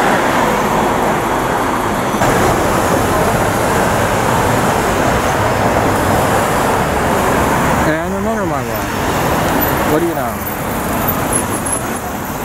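Steady city street traffic: cars and engines running and tyres rolling as vehicles drive by in slow traffic.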